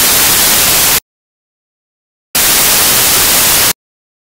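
Loud hiss of white-noise static that cuts in and out abruptly: one burst ends about a second in, then dead silence, then a second burst of about a second and a half. The audio signal is breaking up, leaving static in place of the performance.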